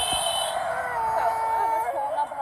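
A toddler girl crying, with one long held wail in the second half; she is upset after having her ears pierced.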